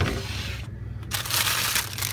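Rustling and crinkling as a hand rummages among wrapped ice creams in a chest freezer: a short rustle at the start, then a louder burst from about a second in, lasting most of a second, over a steady low hum.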